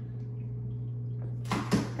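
A steady low hum, and about one and a half seconds in a short scraping rustle of handling noise as the phone brushes against the aquarium cabinet.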